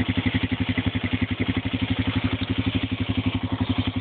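A 4-wheeler (ATV) engine running at steady low revs with a fast, even exhaust pulse while it tows a makeshift sled through snow.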